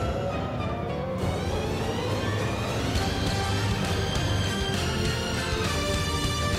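Live symphonic metal band playing, with drums, bass and keyboards, in a jig-like section in three time.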